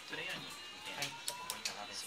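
Indistinct voices over background music, with a few light clicks.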